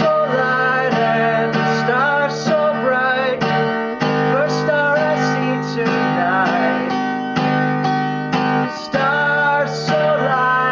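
Acoustic guitar strummed in a steady rhythm, about two strums a second, with the chord changing near 4 s and again near 9 s.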